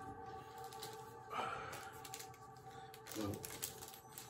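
Faint rustle and a few light clicks from a CD box set and its booklet being handled, over faint steady background music.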